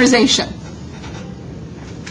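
A woman's speech ends in the first half-second, followed by a steady background hiss of room noise with a few faint ticks.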